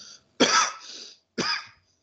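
A man coughing twice: a louder cough about half a second in and a shorter one about a second later.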